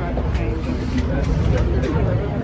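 Wind buffeting the camera microphone with a steady low rumble, while people talk in the background.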